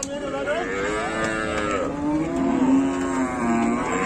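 Cattle mooing, several calls overlapping, with one long low moo in the second half.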